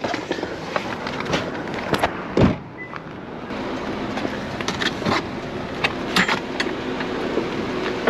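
Someone getting out of a car with gear: the door opening and a clatter of clicks and knocks from handling a bucket and tongs, with one heavy thump about two and a half seconds in, over a steady background hiss.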